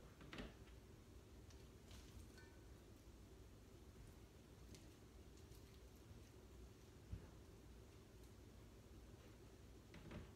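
Near silence: faint room hum with a few soft clicks and rustles from a spoon scooping sticky molasses candy mixture out of a bowl and hands shaping it into patties.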